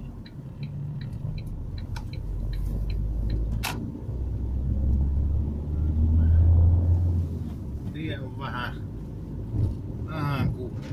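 Car engine pulling away and accelerating, its low hum rising and growing louder to a peak about six to seven seconds in, then easing off. The turn-signal indicator ticks evenly in the first two seconds, and there is one sharp click near four seconds.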